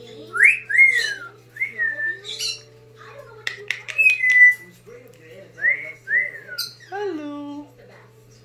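Brown-headed parrot whistling a string of short rising-and-falling whistles, with a few sharp clicks midway and a lower falling call near the end.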